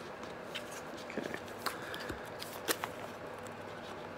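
A cardboard vape-kit box being worked and torn open by hand: faint scraping and rustling of card with a few small sharp clicks.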